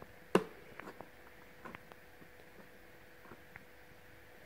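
Bellini multi-cooker's rotary time dial being turned, giving one sharp click about a third of a second in and a scatter of faint ticks after it.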